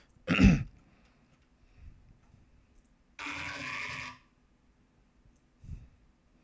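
A man coughs once, sharply, about half a second in. About three seconds in, a quieter, buzzy synthesizer growl note from Massive sounds for about a second, and there is a soft low thump near the end.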